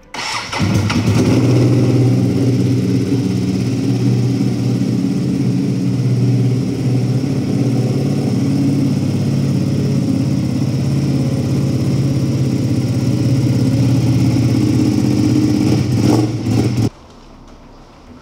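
Ducati Panigale V2's 955 cc Superquadro V-twin cranked on the starter and catching within about half a second, then idling steadily. It is switched off abruptly near the end.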